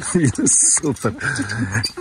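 Speech: a man talking, with a sharp hissing 's' sound about half a second in.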